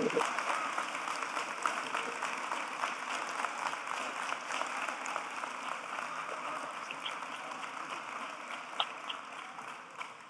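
Audience applauding, the applause slowly dying away.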